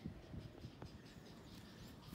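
Near silence: faint background hiss with one slight tick a little less than a second in.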